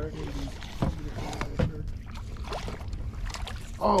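A few light, irregular knocks and clicks of gear against a small boat over a steady low rumble, as a fish is played up to the surface.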